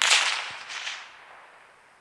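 Gunshot from a suppressed .308 Winchester rifle: a sudden loud crack right at the start, echoing away and fading over about a second and a half.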